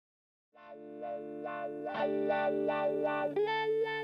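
Intro music starting about half a second in: a short plucked-note figure repeating about three times a second over held chords, with a step up in pitch near the end.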